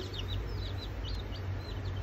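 Day-old chicks peeping: a rapid run of short, high peeps, several a second, over a steady low hum.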